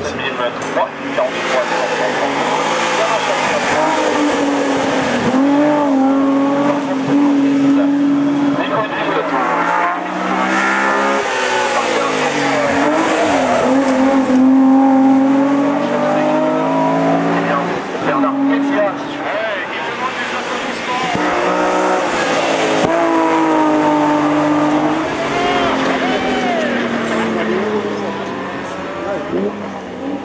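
A BMW 323i E21 hill-climb car's 2.3-litre straight-six racing engine, driven hard up a mountain road. Its pitch climbs under full acceleration and drops back again and again through the gear changes and between corners.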